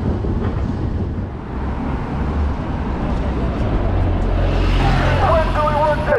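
Ambient noise of a London Underground station escalator ride: a steady rumble that grows deeper and louder about two seconds in, with voices near the end.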